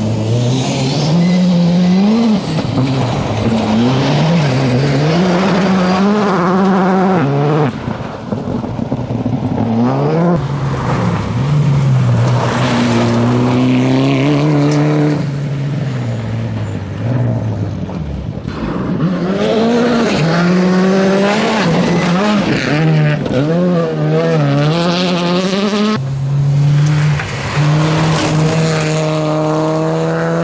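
Rally cars driving hard on a gravel stage, one after another, engines revving up and dropping back repeatedly through gear changes, with tyres working on the loose surface. The sound breaks off abruptly several times as one car's pass gives way to the next.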